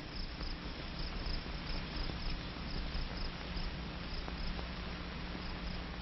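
Steady hiss and low hum of an old optical film soundtrack during a silent stretch, with faint regular ticking about three times a second.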